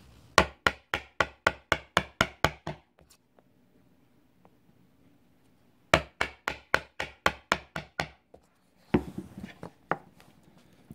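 Light, rapid mallet taps on a chisel ground to a 17-degree bevel, chopping dovetail waste in soft northern white pine: two runs of about ten knocks each, about four a second, the first just after the start and the second about six seconds in. A short handling noise follows about nine seconds in.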